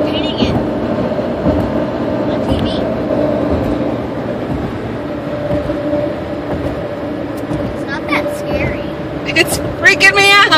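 Steady road drone of a car driving across the Mackinac Bridge deck, heard from inside the cabin: tyre and engine noise with an even hum.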